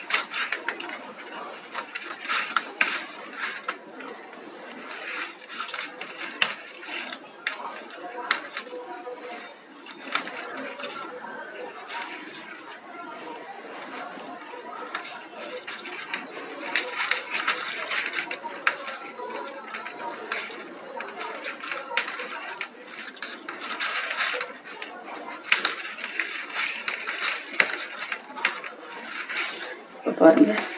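Paper being handled and cut while a box is made: irregular rustles and clicks, with faint speech underneath.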